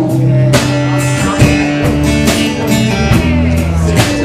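A live band plays an instrumental stretch of a song: guitar chords over bass notes and a drum kit keeping a steady beat of about two hits a second.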